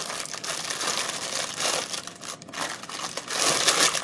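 Crinkling and rustling of craft materials being handled, uneven throughout and louder shortly before the end.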